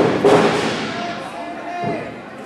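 A wrestler's body slammed onto the ring mat: a heavy thud right at the start, fading out through the hall, followed by a voice calling out.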